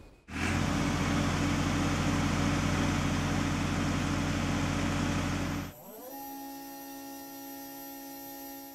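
Diesel engine of a truck-mounted concrete pump running loud and steady, cut off abruptly about two-thirds of the way through. It is replaced by the much quieter, steady whine of the pump's electric motor, which rises briefly in pitch as it comes up to speed.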